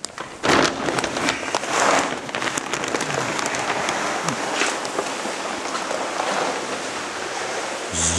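Perlite dry levelling fill pouring out of a plastic sack onto the floor: a steady rushing hiss of many small granules, starting about half a second in, with the sack rustling.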